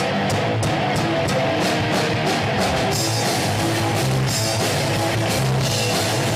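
Punk rock band playing live: distorted electric guitar through Marshall amps over a drum kit keeping a fast, steady beat, about three hits a second. The cymbals get louder about halfway through.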